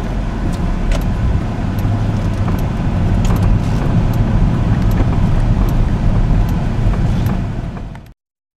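2005 Corvette Z51's 400 hp LS2 V8 running steadily as the car drives, heard from inside the cabin. The sound fades out near the end.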